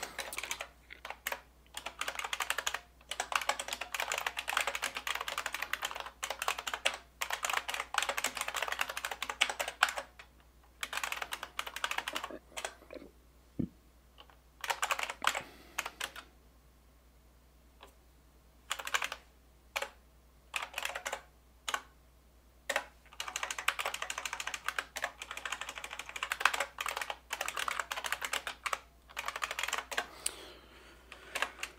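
Typing on a computer keyboard in bursts: a fast run of keystrokes for about the first ten seconds, then scattered single keys with a brief pause in the middle, and another fast run near the end.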